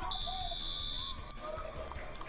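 Match timer's electronic buzzer giving one steady high beep about a second long, the signal that the match clock has run out. Faint arena noise lies beneath it.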